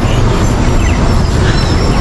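Loud, steady outdoor rumble with a hiss above it, heaviest in the bass and with no single clear source standing out.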